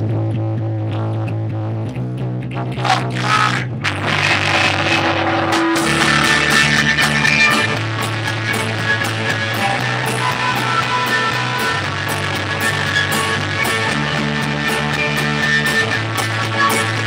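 A punk rock band playing a song: a bass guitar holds low notes that change every couple of seconds under electric guitar. The drums and fuller guitar kick in about four seconds in, and the whole band plays on at a steady loud level.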